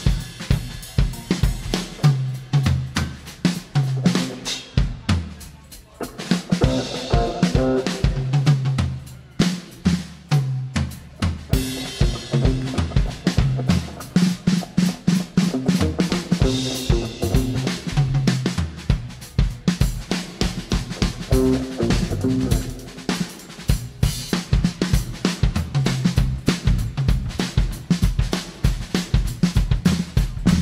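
Drum kit played live as a featured solo spot: fast fills on snare, bass drum and rimshots with cymbals, the drums carrying the music. A bass line sounds underneath.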